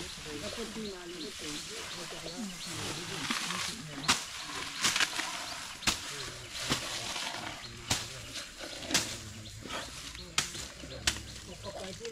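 An Asian elephant feeding on cut grass stalks: a series of sharp cracks and crunches, about one a second in the second half.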